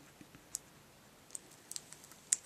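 A few faint, light clicks of small plastic craft pieces being handled on a work mat, scattered about half a second to a second apart.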